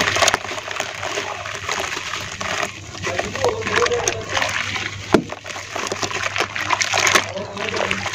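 Hands squeezing and crumbling wet red dirt in a bucket of muddy water: continuous sloshing and splashing with many small crackling squelches, and one sharper knock about five seconds in. A faint low hum runs underneath.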